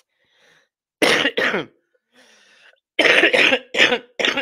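A person coughing: two harsh coughs close together about a second in, a short breath, then another bout of coughing starting about three seconds in.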